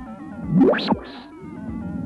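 Background music with a cartoon sound effect of a vacuum cleaner sucking something up: a quick whoosh rising in pitch about half a second in, followed by a short hiss.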